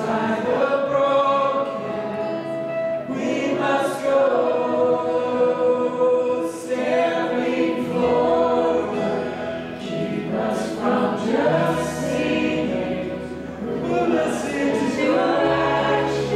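Live church worship band playing a song with guitars, bass and keyboard, with voices singing in a choir-like blend; the bass note shifts every few seconds.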